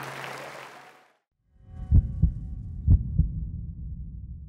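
The big band's final brass chord dies away in the hall's reverberation, then the sound cuts out. After a short silence a low rumble starts, with two pairs of low thumps about a second apart.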